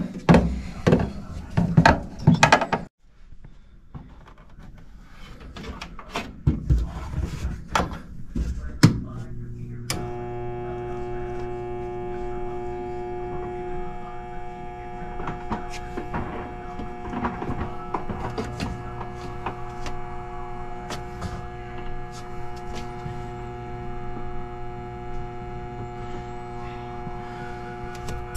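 Clicks and knocks of handling in the furnace cabinet, then from about nine seconds in a steady electric hum with several fixed tones. It comes from the newly installed inline inducer draft motor of a mobile-home gas furnace being powered. The motor failed to start because one of its plastic fan blades was catching on the housing.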